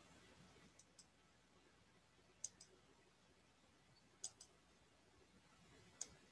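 Near silence broken by faint computer mouse clicks: a single click about a second in, two quick double clicks a couple of seconds apart, and another click at the end.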